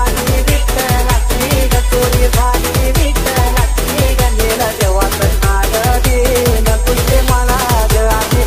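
Background music with a fast, steady beat and a wavering melody line.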